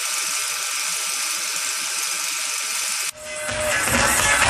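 Television static hiss, a steady noise that cuts off abruptly about three seconds in. It is followed by loud electronic dance music from a live club set, fading up.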